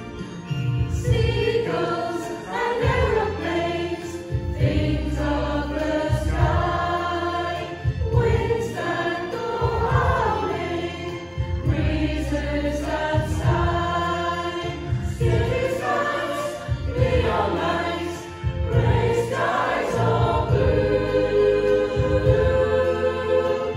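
Community choir of men, women and children singing a slow song together, with the lines "breezes that sigh" and "gray skies or blue", over an instrumental accompaniment with a pulsing bass line.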